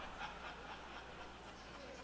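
Faint audience chuckling and murmur, otherwise quiet.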